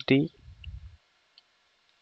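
A man's voice ends a word at the start, followed by a low muffled rumble and a few faint clicks of computer keys being typed.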